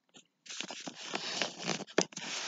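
Close rustling and scraping of cloth and paper rubbing against the recording device as it is moved, with small clicks and one sharp click at the end.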